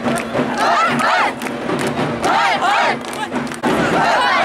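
A large crowd shouting and cheering, many raised voices at once in loud surges, dipping briefly near the end.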